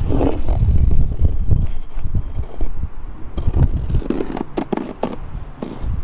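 Pencil scratching across plywood in short strokes as it is swung in an arc on a stick compass. Under it runs a loud, uneven low rumble of wind on the microphone.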